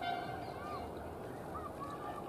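Common mynas calling: a short nasal, honk-like call at the very start, followed by several brief curling whistled notes.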